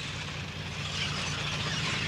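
Heavy armoured vehicle's engine running: a steady low drone with a rough hiss above it, a little louder from about a second in.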